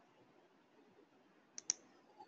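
Two quick clicks a tenth of a second apart, about a second and a half in, from the presenter's computer as the slideshow advances to the next slide; otherwise very quiet.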